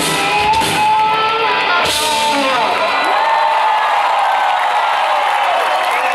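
A live band ends a song with a final hit about two seconds in. The crowd then cheers and whoops, loudly.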